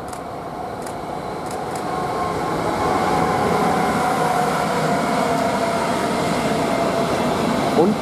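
A freight train hauled by two electric locomotives, a Siemens Vectron and a Class 189, passing close with enclosed car-carrier wagons. The steady rumble of wheels on rails grows louder over the first three seconds and then holds, with a thin whine over it.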